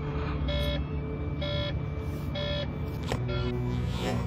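Three short electronic beeps, about a second apart, over a steady low drone and background music, with a sharp click a little after three seconds.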